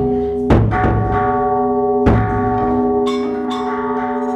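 Chầu văn ritual ensemble music without singing: held keyboard chords run throughout, punctuated by two strong drum strikes about a second and a half apart, then two lighter high ringing taps near the end.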